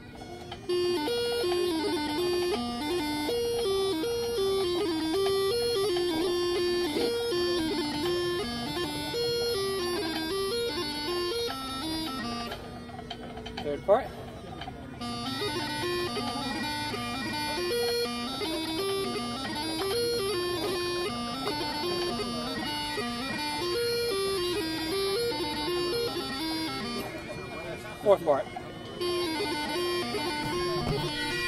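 A hornpipe played on a bagpipe practice chanter: a quick, stepping melody running almost without a break, with a short dip in level about halfway through.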